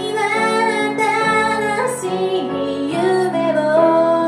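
A woman singing into a microphone with grand piano accompaniment, holding long notes with vibrato. The melody moves to new notes about two seconds in and again near the three-second mark.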